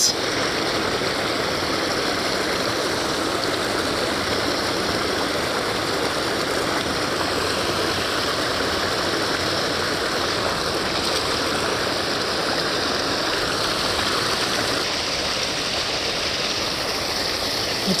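Water rushing steadily over a pond's stone spillway, a constant unbroken rush.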